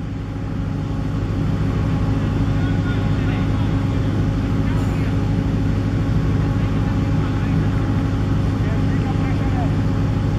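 A steady low motor hum, even in level, with faint voices in the background.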